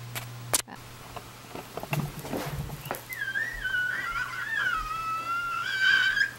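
A few clicks and knocks of fingers handling the camera's built-in microphone, then, from about three seconds in, someone whistling a wavering, sliding tune for about three seconds.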